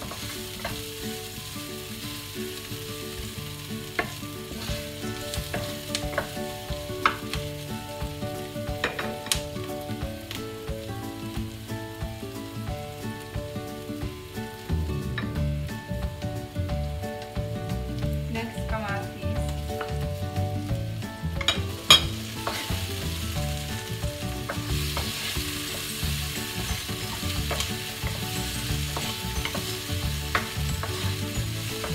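Chopped onion and garlic sizzling in hot oil in a nonstick wok, stirred with a wooden spatula that scrapes and taps the pan now and then. One sharp knock, the loudest sound, comes about two-thirds of the way through.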